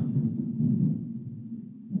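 Low rumble of thunder from a thunderstorm, slowly dying away.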